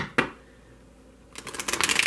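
A deck of oracle cards handled and shuffled by hand: two short clicks at the start, then a rapid run of card flicks in the last half-second or so as the deck is riffled.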